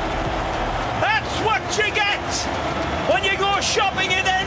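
Football match commentary: a commentator's excited voice in bursts of exclamation over steady stadium crowd noise.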